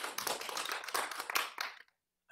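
Audience applause, a scattering of hand claps, that cuts off suddenly near the end.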